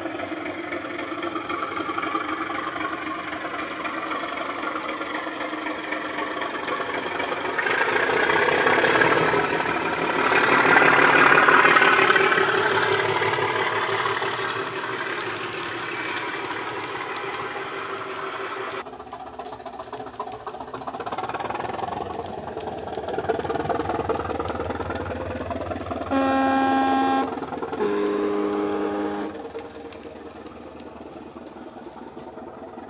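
OO gauge model diesel locomotive's Loksound 5 DCC sound decoder playing engine sound through the model's speaker as it runs past, louder as it comes closest. A second sound-fitted model follows with its engine sound and a two-tone horn near the end, a higher note and then a lower one.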